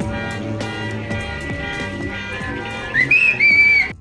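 Background music with a steady beat and plucked notes. About three seconds in, a loud, high whistle-like tone slides up and holds for nearly a second, then the music cuts off suddenly.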